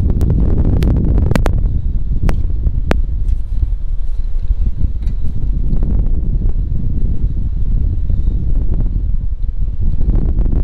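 Wind buffeting the microphone as a loud, steady low rumble. About half a dozen sharp metal clicks and taps come in the first three seconds as a rusty steel door latch on a metal hatch is worked.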